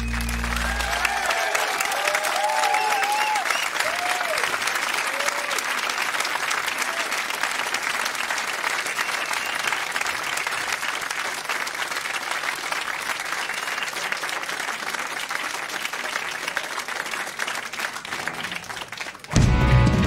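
Audience applauding and cheering after a rock song, with a few shouts in the first few seconds as the last notes die away. About nineteen seconds in, the band starts the next song loudly, drums and bass coming in at once.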